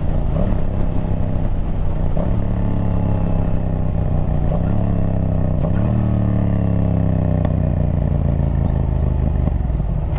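Yamaha MT-07 parallel-twin engine through a Yoshimura exhaust, pulling hard through the gears: the pitch climbs and drops at each shift, about two, five and seven and a half seconds in, then falls away as the throttle is rolled off near the end, with exhaust pops.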